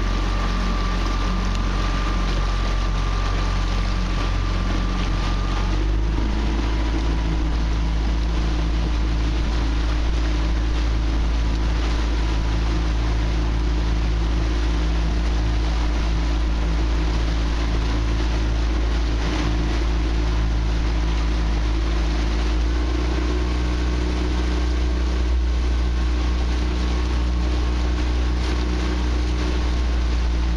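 Small outboard motor running steadily at low speed: a constant drone with a steady hum whose pitch drops slightly about six seconds in and shifts again near the end.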